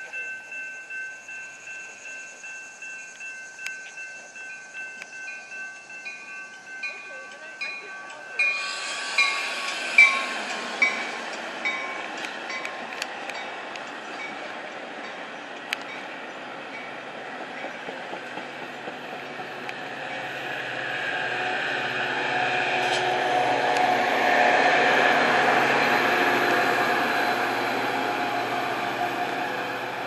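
Railroad crossing bells ringing at a steady pulse while a Metra commuter train approaches. About eight seconds in, the rumble of the arriving train takes over, with wheels clicking over rail joints, and the diesel locomotive grows louder as it passes, loudest a little past the middle.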